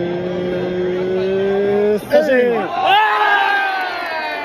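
Baseball fans' cheering: a long held shout that breaks off about two seconds in, then a second, higher shout that slowly falls away.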